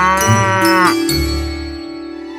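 A cow mooing once: one drawn-out call that rises and then falls in pitch and ends about a second in, over steady background music.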